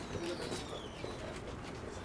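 A bird calling faintly over low outdoor background noise.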